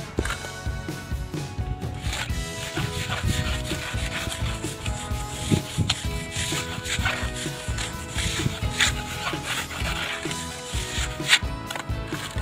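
A plastering trowel scraping and smoothing wet cement render along the edge of a block wall, in repeated rubbing strokes.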